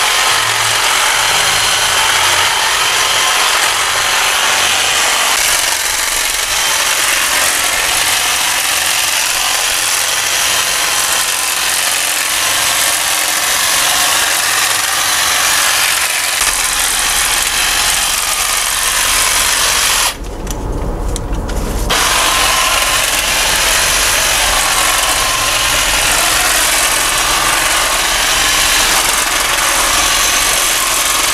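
Cordless electric hedge trimmer running steadily, its reciprocating blades cutting through thuja foliage. It breaks off briefly about two-thirds of the way through, then runs again.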